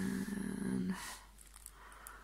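A woman's voice in a drawn-out, wordless hum lasting about a second, followed by a short breath.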